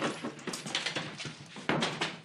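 Low male chuckling among a few scuffs and knocks of people moving about, the loudest knock near the end.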